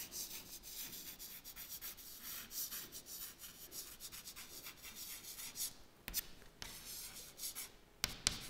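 Faint chalk scratching on a chalkboard as words are written, in quick short strokes with a couple of brief pauses near the end.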